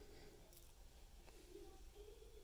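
Near silence: room tone with a couple of faint clicks from a wristwatch being handled.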